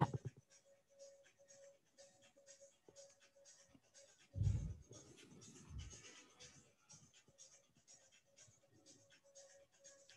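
Faint rustling and scratching of a person shifting on an exercise mat, with two soft low thumps about four and a half and six seconds in.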